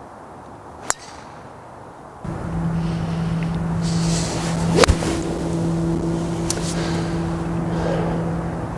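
Golf tee shot: the swish of the club's swing rising into a sharp click as the clubface strikes the ball, nearly five seconds in, over a steady low hum. A fainter click comes about a second in.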